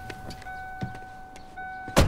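A car's warning tone sounds steadily, with brief breaks, while the driver climbs out with the door open, along with a few soft knocks of movement. A car door slams shut at the very end, the loudest sound, and the tone stops with it.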